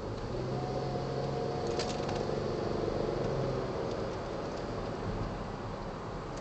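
Cabin sound of a 2010 Ford Flex AWD's twin-turbo EcoBoost V6 and its tyres while driving: a steady road rumble, with the engine note coming up louder for a few seconds and then easing off, and a few light rattling ticks.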